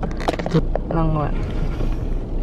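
A few short clicks and knocks, then a brief voice sound about a second in, over a steady low hum inside a car.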